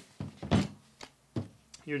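Hands handling a hard battery pack and its charger on a table: a few short knocks and clicks, the loudest a dull thunk about half a second in.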